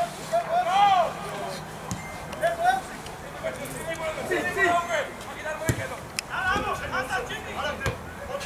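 Footballers shouting calls to each other across the pitch, with a few sharp thuds of the ball being kicked.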